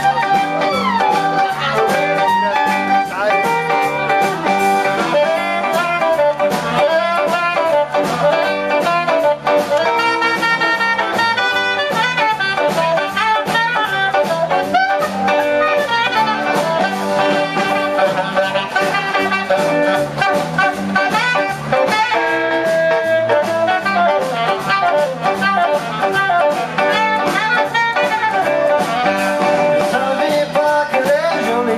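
Live Cajun band playing an instrumental break: saxophone taking the lead over strummed guitars, fiddle and drums.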